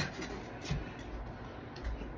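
Faint rubbing and handling noise with a couple of soft knocks, from someone moving about the room and rummaging through belongings.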